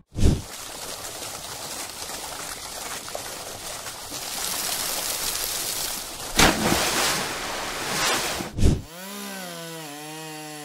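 Water churning and splashing in a fish pond, then a loud splash about six seconds in as a man falls toward the water with a sack of feed. In the last second a chainsaw engine starts running.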